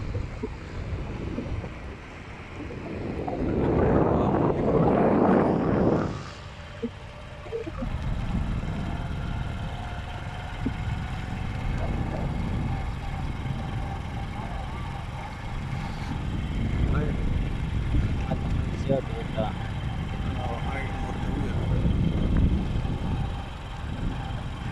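Wind rushing over the microphone with a motorcycle engine running underneath while riding along, with a louder surge of wind noise about four to six seconds in.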